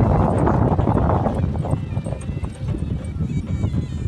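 A horse's hooves trotting on packed dirt in a quick run of thuds, with voices and faint music mixed in.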